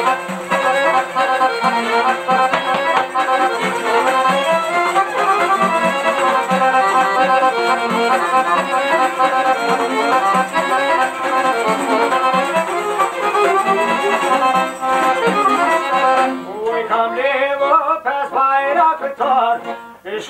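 Albanian folk instrumental passage on two plucked long-necked lutes, a large sharki and a smaller lute, played in a fast, dense line. Male singing comes back in about three-quarters of the way through.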